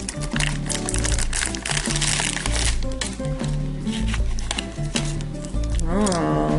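Crinkling of a foil blind-bag wrapper being torn open and handled, loudest over the first few seconds, over a steady background music track.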